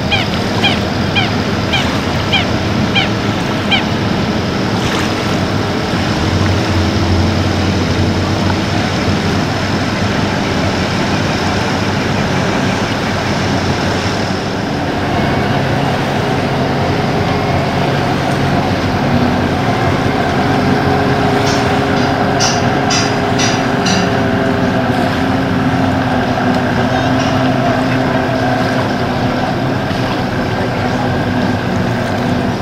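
Boat engine running steadily at the lakeshore, with a quick series of short chirping calls in the first few seconds and a few clicks about two-thirds of the way through.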